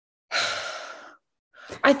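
A woman's breathy sigh, an exhale of about a second that fades away, as she pauses over a hard question. A spoken word begins near the end.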